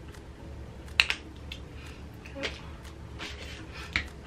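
Plastic cap of a maple syrup squeeze bottle being worked open by hand: a couple of sharp clicks about a second in and another near the end.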